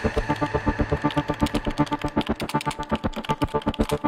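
Electronic closing-ident music: a fast, even pulse of repeated synth notes.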